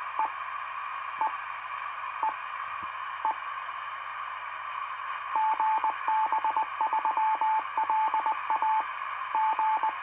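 2 m amateur radio transceiver receiving a repeater on 145.7125 MHz: the open carrier comes through as a steady hiss, with a short beep about once a second, then, from about five seconds in, a fast string of short and long beeps like a Morse code identification.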